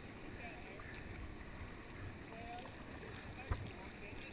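Faint, steady rush of river water moving around a kayak in the runout below a whitewater rapid, with a brief soft knock about three and a half seconds in.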